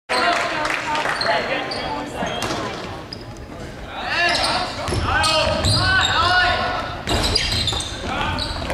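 Basketball being dribbled on a hardwood gym floor with players' sneakers squeaking in short chirps, loudest in the second half, and players' voices echoing in the large gym.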